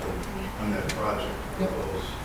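A steady low hum with faint, indistinct voices over it.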